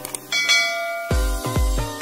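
A bell chime sound effect rings out about a third of a second in and fades: the notification-bell click in a subscribe animation. About a second in, background music with a heavy, deep beat starts.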